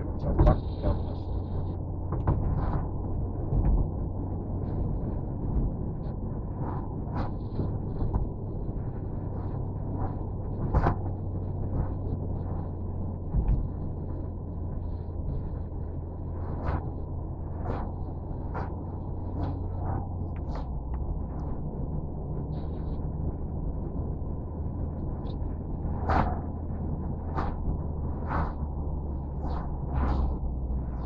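Car driving, heard from inside the cabin: a steady low engine and road hum that drops slightly about twenty seconds in, with scattered sharp knocks and clicks from bumps and rattles.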